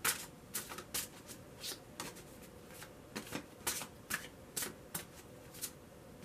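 A deck of tarot cards being shuffled by hand: a quiet run of irregular sharp card snaps and flicks, about two a second.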